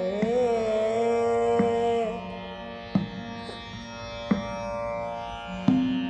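A woman sings a slow, gliding Hindustani classical vocal phrase in Raag Ramkeli for about the first two seconds. The voice then falls away, leaving a steady drone and slow tabla strokes about one every second and a half, in the unhurried pace of vilambit ektaal.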